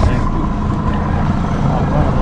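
Mercury outboard motor running steadily at low trolling speed, a continuous low rumble.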